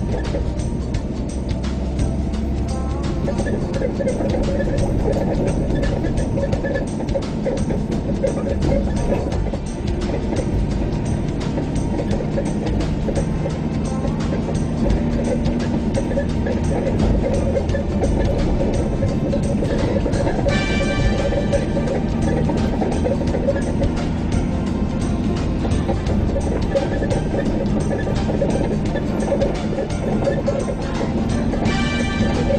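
Music with a steady beat plays over the low, steady rumble of a car being driven.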